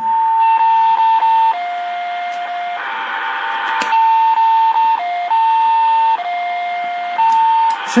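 Ham radio receiver putting out interference from a plugged-in Samsung phone charger: a steady whistling tone over hiss that steps back and forth between a higher and a lower pitch every second or so, like a CW (Morse) signal. It is the charger's electrical noise being picked up, not a real transmission.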